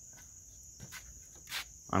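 Night insects, crickets, chirring steadily at one high pitch, with a few faint knocks in the foreground. A voice starts right at the end.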